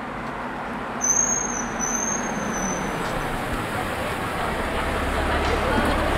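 City street traffic noise, with a car's engine and tyres rumbling louder toward the end as it comes close. A thin high whistle-like tone sounds for about two seconds, starting about a second in.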